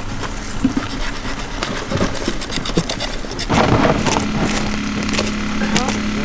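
Knife blade scraping and clicking against a wooden stump chopping block as a fish is cut on it, a quick run of small sharp clicks and scrapes. About halfway through the sound gets louder and a steady low hum joins it.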